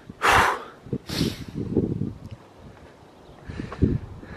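Two loud, hissing breaths close to the microphone, about a second apart, followed by soft knocks and a dull thud near the end.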